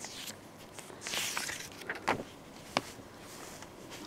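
A paper wall calendar's page being flipped over: a short rustling swish about a second in, followed by a couple of light taps as the page settles.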